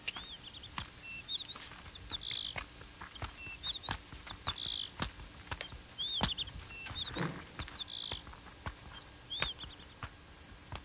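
A songbird repeating a short chirping phrase about every two seconds, over irregular light knocks from the horse's hooves and a person's boots walking on hard dirt. A brief low sound comes about seven seconds in.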